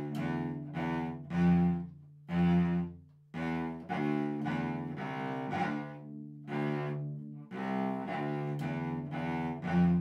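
Solo cello played with the bow: a simple beginner's melody of separate, detached notes. The short crotchets are lifted off to give a dance-like feel.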